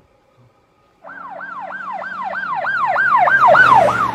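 Emergency-vehicle siren in a fast yelp, each cycle a quick rise and a slide back down, about three a second. It starts about a second in and grows steadily louder over a low steady hum.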